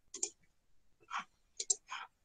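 About five faint short clicks at a computer, a single one near the start and then a quick cluster of three near the end: mouse clicks as a presentation is brought up for screen sharing.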